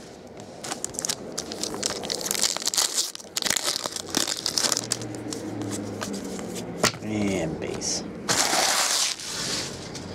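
Trading cards being handled and shuffled, with foil pack wrappers crinkling, in a run of rustling bursts. There is a sharp click about seven seconds in and a louder rush of rustling shortly after.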